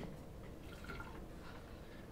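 Faint drips of universal indicator falling from a dropper into a tall glass graduated cylinder, over quiet room hiss.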